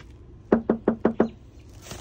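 Knuckles knocking on a front door: five quick, evenly spaced raps about a second in, followed near the end by a short rustle.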